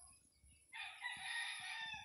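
A single faint drawn-out animal call, starting a little under a second in and lasting just over a second.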